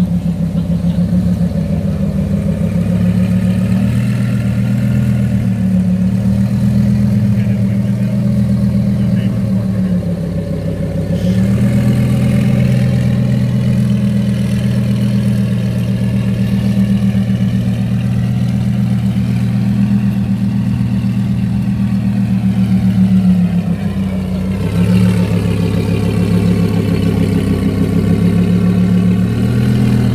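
Lamborghini Huracán V10 engine idling steadily, its pitch sagging briefly twice before settling back.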